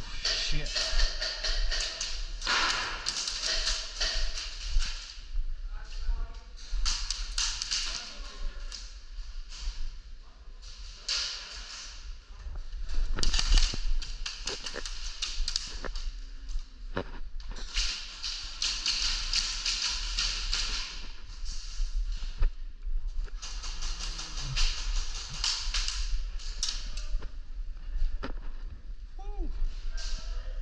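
Airsoft guns firing in repeated bursts of a second or two, with sharp taps and knocks of BBs and impacts between them, and distant players' voices in the arena.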